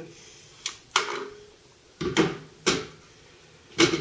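Ruger Mini-14 magazine being worked in and out of the rifle's magazine well: five or six sharp metallic clicks and clacks, irregularly spaced, the loudest about a second in and near the end.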